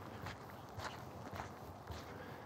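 Footsteps walking on a gravel road, four even steps a little over half a second apart, picked up faintly by the walker's body-worn wireless microphone.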